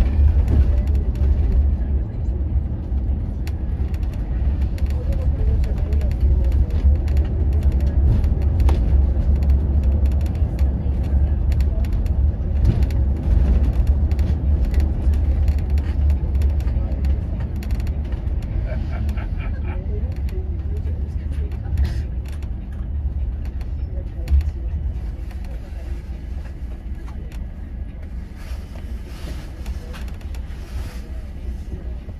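Cabin sound of a Volvo B11RT coach with a six-cylinder diesel, driving at low speed: a steady low engine and road drone with scattered interior rattles and creaks. The drone eases off a little near the end.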